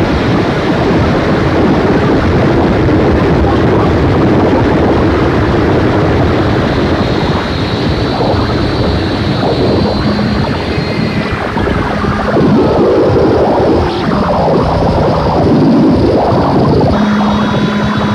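Japanese harsh noise music: a loud, dense wall of distorted noise. Thin high whistling tones drift through it from the middle, and a low steady hum cuts in and out in the second half.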